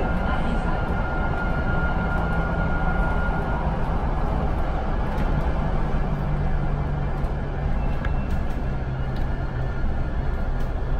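Cabin sound of a VDL Citea electric bus under way: steady road and running noise with a low drive hum, and a thin high whine for the first three or four seconds.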